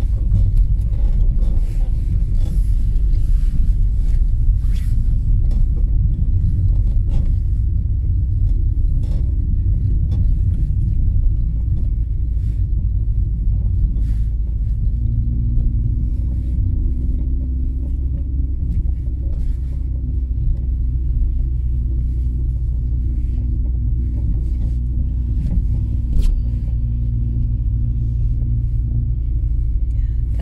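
A car's low, steady rumble of engine and tyres, heard inside the cabin while it drives slowly over a rutted, slushy snow road, with scattered short knocks and clicks. A steady hum comes in about halfway through.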